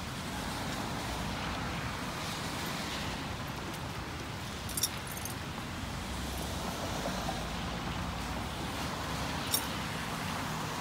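Steady noise of rain and traffic on a wet street, with a low rumble of a passing vehicle partway through. Twice, about five seconds in and near the end, there is a brief metallic jingle of a horse's bridle buckles and bit as the bridle is taken off.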